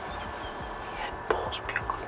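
Hushed human whispering, with one sharp click a little over a second in.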